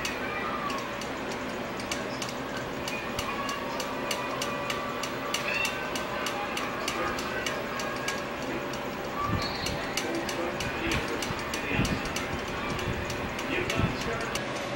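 Steady mechanical ticking, about three or four sharp ticks a second, over gym background noise, with a few dull thumps in the last few seconds.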